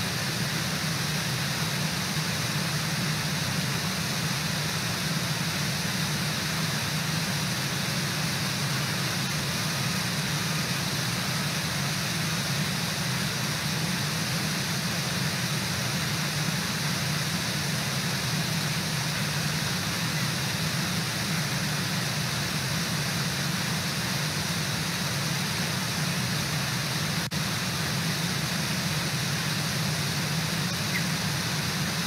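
Steady rush of a river waterfall, an even hiss with a low rumble underneath.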